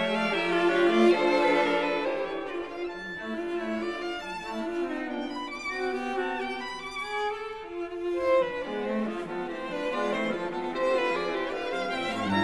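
String quartet of two violins, viola and cello playing a continuous passage. The lowest part drops out for several seconds in the middle and comes back in about eight seconds in.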